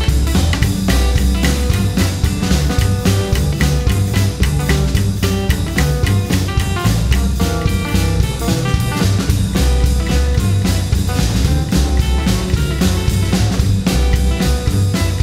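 Instrumental break in a rock-and-roll song: guitar over a drum kit, with a steady driving beat.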